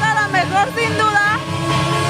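A young woman talking into a handheld microphone, her words unclear, with the club's electronic dance music playing underneath as a low bass rumble.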